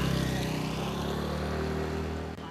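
Street traffic: a motor scooter's engine running close by, with steady road noise.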